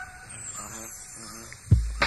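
Hip-hop track on a cassette mixtape in a brief breakdown: the beat drops out, leaving faint vocals and a thin high falling tone. A heavy bass kick about a second and a half in brings the beat back.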